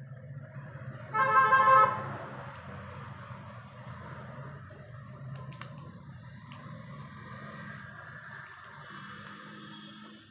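A single short honk from a vehicle horn, one steady pitched note lasting under a second, about a second in. A steady low hum and a few faint clicks continue under it.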